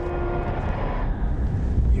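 Steady low vehicle-engine rumble, with a held tone that fades out about half a second in.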